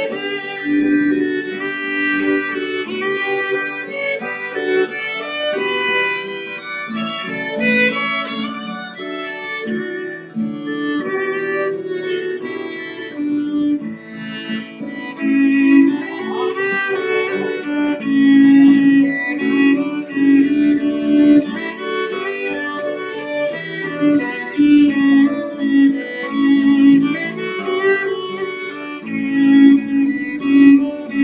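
Two fiddles playing a traditional Celtic tune together, backed by strummed acoustic guitar, without a break.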